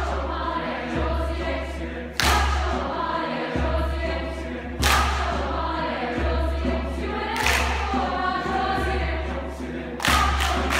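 Large mixed choir singing, with a loud sharp percussive strike about every two and a half seconds, one right at the start and others about two, five and seven and a half seconds in.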